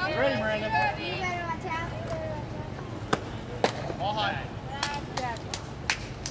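Voices of players and spectators calling out around a softball field, mostly in the first two seconds and again briefly about four seconds in, with a few sharp knocks scattered through the second half.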